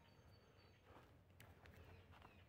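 Near silence: quiet woodland background, with a faint high, thin tone in the first second and a few soft clicks.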